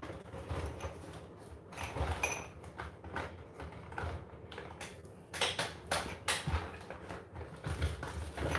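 Handling noise: a string of small knocks, scrapes and rustles as the phone and its tangled charging cable are moved about, busiest a little past the middle.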